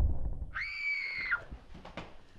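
A heavy thump, then about half a second later a short, high-pitched scream that holds one pitch for under a second and breaks off.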